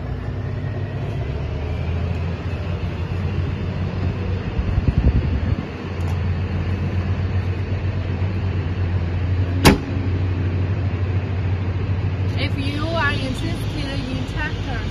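A 50 hp tractor's Xinchai diesel engine idling with a steady low hum, a louder uneven rumble briefly near the middle, and a single sharp knock of the cab door shutting about ten seconds in.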